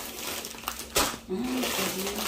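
Plastic bags of dry beans crinkling as they are handled and set down on a table, with a sharp knock about a second in.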